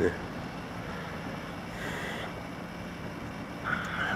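Steady low hum of a running wellpoint dewatering pump keeping the excavation drained, with a brief hiss about halfway through.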